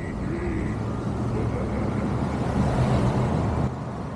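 Road and wind noise from a moving pickup truck over a low engine hum, growing louder and then stopping abruptly shortly before the end.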